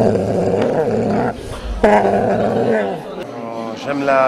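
A dog growling in two long growls, the second ending with a falling pitch.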